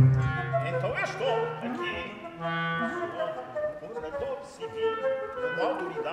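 A small instrumental ensemble playing held notes, with a wind instrument prominent, under a man's operatic singing that comes and goes.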